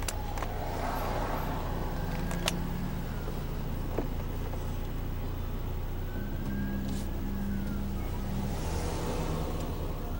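Steady engine and road rumble of a car driving, heard from inside the cabin, with a few faint clicks scattered through it.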